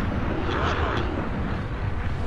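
Deep, steady rumbling drone with a brief whooshing swell about half a second to a second in: slowed-down sound design for musket balls flying through the air.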